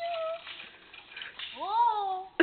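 A foot kicks a thin dead sapling with a dull knock. A short high vocal note follows, and near the end comes a longer high-pitched cry from a person, its pitch rising then falling.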